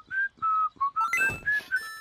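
A quick whistled tune of short, clear notes, about four a second, hopping up and down in pitch. About a second in, a brief high glittering sound effect joins the notes.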